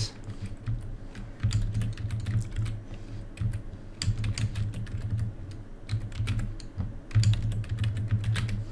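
Typing on a computer keyboard: irregular runs of keystroke clicks, over a low hum that comes and goes.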